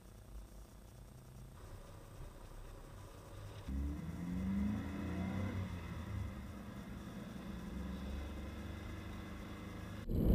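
Subaru BRZ's 2-litre flat-four boxer engine heard from outside the car, faint at first. About four seconds in it accelerates, its pitch rising for a second or two, then it settles into a steady low drone.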